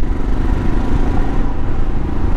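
Motorcycle engine running steadily at a cruise while riding, mixed with wind and road noise on the camera's microphone.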